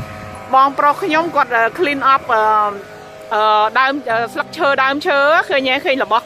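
Background music: a singing voice in sung phrases with held, gliding notes.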